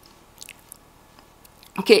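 A pause in a woman's spoken lecture in Italian: faint room tone with a few small clicks about half a second in, then her voice resumes near the end.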